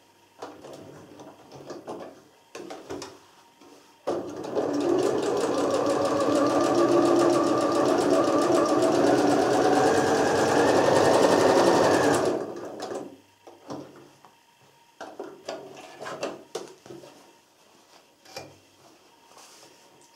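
Janome computerised sewing machine stitching a seam at a steady speed for about eight seconds, then stopping abruptly. Its drop-in bobbin area has just been cleaned of lint, and it is sewing smoothly without puckering the fabric. Soft rustles and clicks of fabric being handled come before and after.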